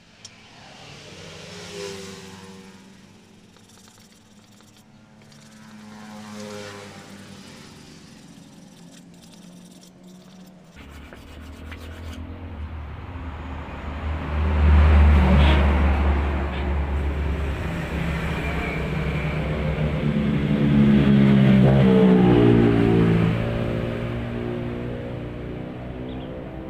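Motor vehicles passing by: two fainter pass-bys in the first seconds, then a much louder low engine rumble that swells about fifteen seconds in and again near the end, its pitch bending up and down.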